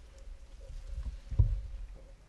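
Low, muffled thumps and rumbling, building to the loudest thump about one and a half seconds in.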